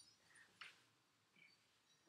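Near silence: quiet room tone with a few faint, brief soft sounds, the clearest about half a second in.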